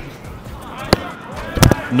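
A football struck hard for a long-range shot, a sharp thud about a second in. A second, louder impact follows just over half a second later as the shot reaches the goalkeeper's end. Background music plays underneath.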